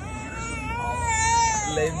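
Infant crying: one long wail that rises, holds, and falls away near the end.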